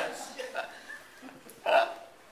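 Room laughter dying away, then one short, loud burst of voice near the end.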